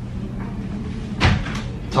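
A single short knock about a second in.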